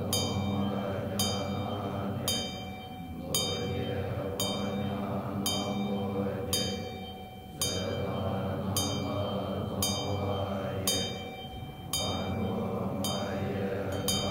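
Tibetan Buddhist monks chanting a sadhana invocation in low voices, in long phrases that break and resume about every four seconds. A ringing metal percussion instrument is struck steadily through the chant, about once a second.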